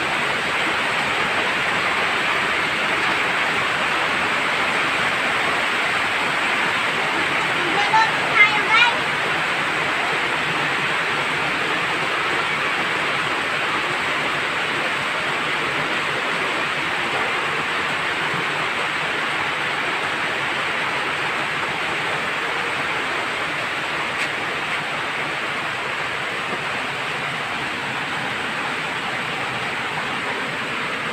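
Heavy tropical rain pouring down, a loud, steady hiss of water. A few short, high rising sounds cut through about eight seconds in.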